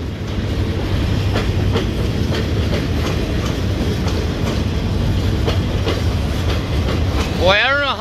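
Freight train of empty log cars rolling past: a steady rumble of steel wheels on rail, with scattered clicks as the wheels cross rail joints. A man's voice starts near the end.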